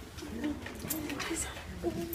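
Quiet, indistinct murmured voices with short low-pitched sounds, too unclear to make out any words.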